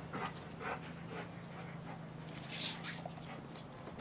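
A dog panting close to the microphone, short breaths about half a second apart, over a steady low hum.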